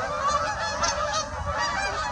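A flock of waterfowl calling overhead: many short calls overlapping one after another.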